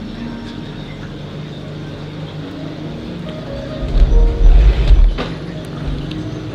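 Background music with held notes that change pitch every second or so, and a loud low rumble about four seconds in that lasts about a second.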